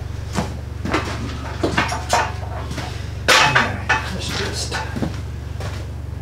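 A heavy wooden butcher block table and a metal hand truck being handled: a string of irregular knocks and clunks, the loudest about three seconds in, over a steady low hum.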